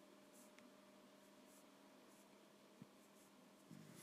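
Near silence: faint scratches and taps of a stylus writing on an iPad's glass screen, over a low steady hum. There is a small click about three seconds in.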